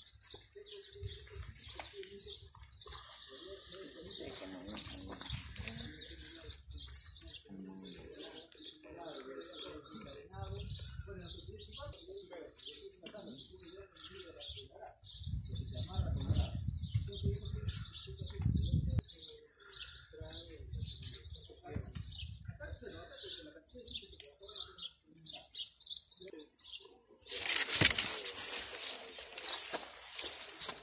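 Many small birds chirping continuously, with low rumbles at times and faint voices in the background. Near the end a loud rushing noise briefly covers everything.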